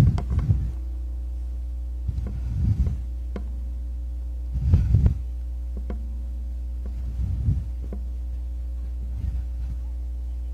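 Steady low electrical hum from an outdoor sound setup, with low rumbling thumps about every two to three seconds.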